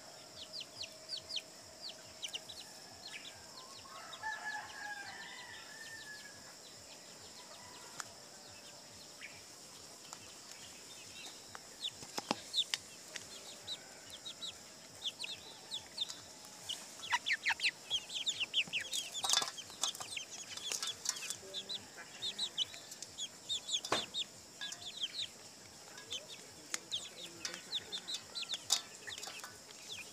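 Chickens pecking grain from an aluminium colander, their beaks ticking rapidly against the metal, with occasional clucks. The pecking grows busier after about twelve seconds.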